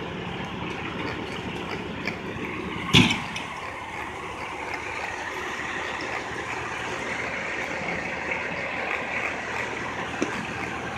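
Steady street noise of idling heavy engines and traffic, with a single sharp bang about three seconds in.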